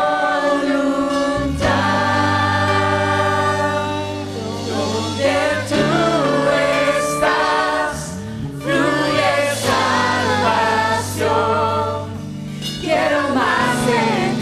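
Christian worship song: singing voices over a steady instrumental backing of long held chords.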